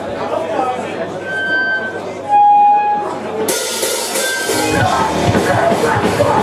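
Crowd chatter and a few ringing notes from the amplified guitars, the loudest a single held tone, then a live hardcore punk band starts playing a song about halfway through, with distorted guitars and drums.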